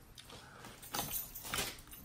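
Faint eating sounds at a table of boiled shellfish: a few soft clicks and crackles from chewing and peeling shells, about a second in and again a little later.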